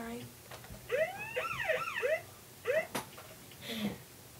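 A child's voice making a quick string of high, rising-and-falling whoops, like a siren imitation, about a second in, then one more short whoop near the end.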